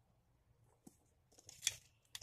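Mostly quiet, with a faint tap and then a short crisp rustle of paper near the end as fingers press a small paper sticker down onto a paper sheet.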